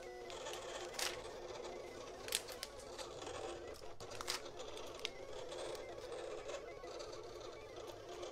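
A sheet of rose-gold metallic heat transfer vinyl being handled and folded, with faint rustling and a few sharp crinkles, over a low steady room hum.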